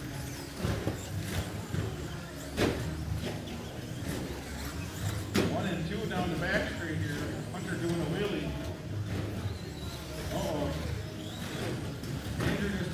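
Background voices talking over the running of radio-controlled short-course trucks on the track, with two sharp knocks about two and a half and five and a half seconds in.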